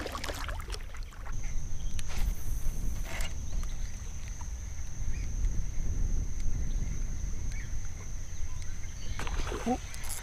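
Low steady rumble of wind and water around a kayak, with two sharp clicks about two and three seconds in and a faint steady high whine from about a second in.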